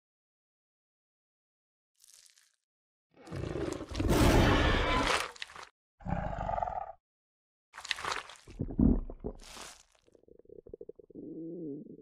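Sound effects for a cartoon dragon: a loud roar lasting about two and a half seconds, starting about three seconds in, then shorter mouth sounds and a few quick bursts, and a low gurgling rumble near the end as she swallows.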